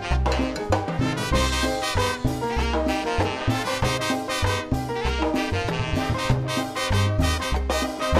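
Live salsa orchestra playing an instrumental passage: trumpets and trombones over piano, upright bass and percussion, with a steady driving beat.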